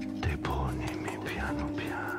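Synthesizer music played live on a keyboard with a pad controller: steady low held tones, with a voice coming in over them about a third of a second in.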